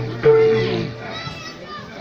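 Stage music ends on a loud held note that fades out about a second in, giving way to the chatter of children and other spectators in the audience.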